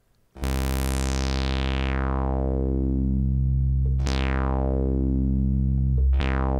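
Sawtooth-wave note from a Synthesizers.com modular synthesizer played through a Q107a state variable filter's low-pass output. It starts about half a second in. The cutoff sweeps from high to low, so the bright upper harmonics fade away and the low fundamental is left. The downward sweep starts again from the top about four seconds in.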